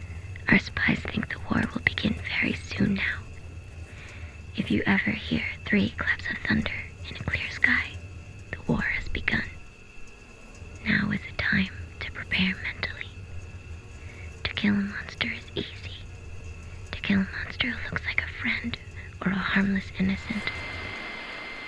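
Whispered speech: a low, breathy voice talking in short phrases over a phone line, with a low steady hum underneath.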